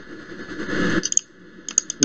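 A breath drawn in, a hiss of about a second that swells and then cuts off, followed by a few faint short clicks.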